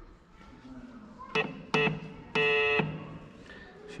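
Morse key sounding an electric buzzer tone: two short beeps, then one longer beep, each starting and stopping sharply at a steady pitch.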